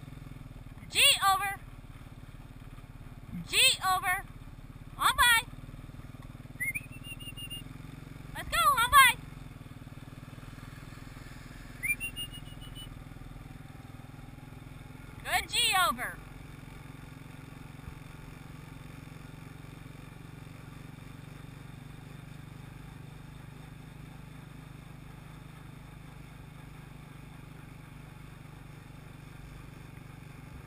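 ATV engine running steadily at low speed, with several short, loud, high-pitched vocal calls over the first sixteen seconds.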